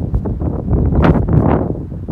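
Wind buffeting the phone's microphone, a loud, uneven rumble that swells in a strong gust about a second in and then eases.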